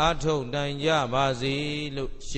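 A Buddhist monk's male voice chanting in a steady, nearly level pitch with long held syllables.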